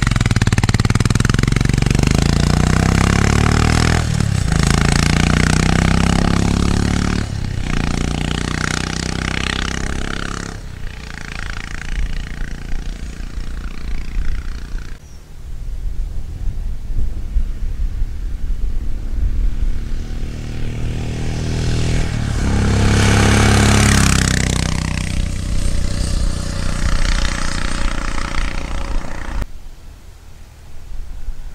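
Royal Enfield Himalayan's single-cylinder engine through an aftermarket Powerage end can, pulling away and accelerating hard. The note drops briefly at each gear change, about 4, 7 and 10 seconds in, then fades into the distance. A little over 20 seconds in the exhaust note swells loud again for a few seconds and fades.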